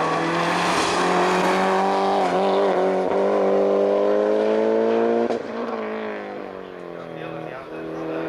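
Mitsubishi Lancer Evo 8's turbocharged 2.0-litre four-cylinder engine pulling hard up a hill-climb course, its pitch rising steadily for about five seconds. Then the pitch drops suddenly and the engine sound falls away as the car moves off.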